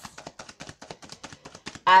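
A deck of tarot cards being shuffled by hand: a fast, even run of sharp card-on-card clicks, about ten a second.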